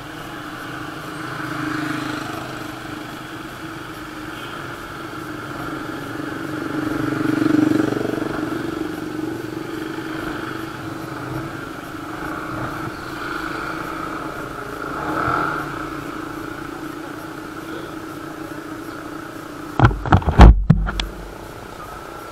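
Motorcycle engines idling in a line of stopped bikes, their steady hum swelling a few times. Near the end, a few brief, very loud low thumps.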